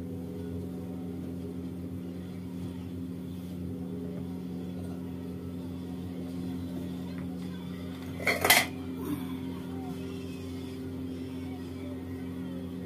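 A brief, sharp clatter of metal kitchenware about eight seconds in, followed by a smaller clink, over a steady low hum.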